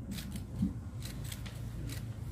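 Several quick, crisp clicks at an uneven pace, typical of press camera shutters, over a low room rumble.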